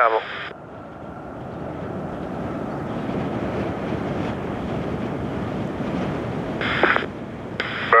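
Airbus A380's four Rolls-Royce Trent 900 jet engines running, a steady rushing noise that builds over the first couple of seconds and then holds. A short burst of airband radio comes in near the end.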